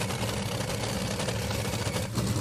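Top Fuel dragster's supercharged nitromethane V8 idling with a steady low rumble.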